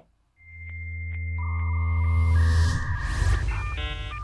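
Electronic intro sting: a synth swell over deep bass that builds for about two seconds with a rising whoosh on top, then breaks into choppy, stuttering chords near the end.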